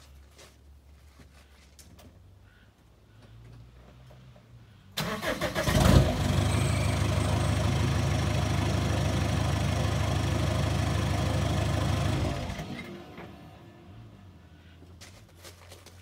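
Chevrolet S10 Rodeio's MWM 2.8 four-cylinder turbodiesel cranking and starting about five seconds in. It idles steadily for about six seconds, then is switched off and runs down.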